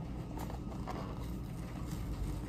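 A few faint clicks and scrapes of a paperboard milk carton's gable top being pried open by hand, over a steady low room hum.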